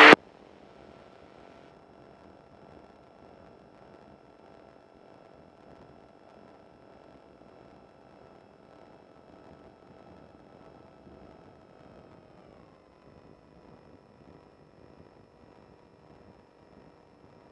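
Faint, steady engine whine from a GT450 flexwing microlight's engine, heard through the aircraft's intercom audio feed. It drops in pitch about twelve seconds in as the engine slows, then holds steady at the lower note.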